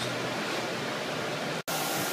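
Steady rushing air noise from ventilation fans running in the garage paint booth, with a brief dropout about one and a half seconds in where the recording cuts.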